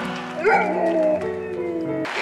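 Golden retriever howling along to piano: one howl starting about half a second in that bends up and then slides down, over sustained piano notes.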